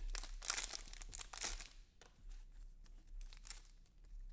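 Foil wrapper of a Panini Select football card pack crinkling and tearing as it is opened, busiest in the first two seconds. Then quieter rustling with a few light clicks as the cards are slid out.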